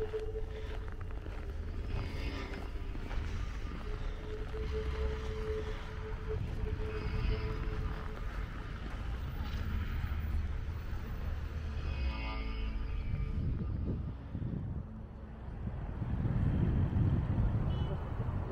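Outdoor street noise: a steady low rumble of road traffic, with snatches of passers-by's voices. The rumble swells louder near the end.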